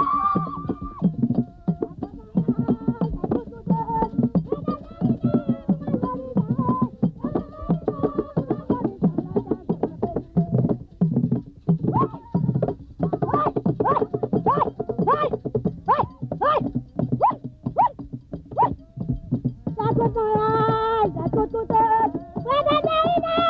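Haitian Vodou ceremonial music: hand drums beaten in a dense, driving rhythm under a group of voices singing. In the middle comes a run of short, arching vocal phrases, about two a second.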